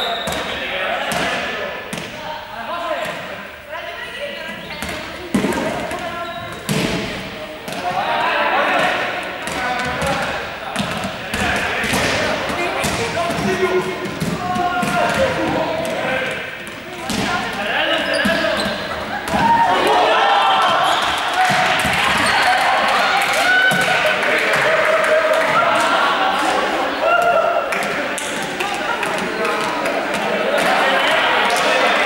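A group of students talking and calling out at once in a sports hall, with scattered short knocks and thumps on the hall floor from feet and the large exercise balls they are dodging. The voices grow louder and busier about halfway through.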